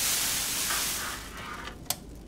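A loud hiss, like a spray, that fades over about a second and a half, followed by a single sharp click near the end.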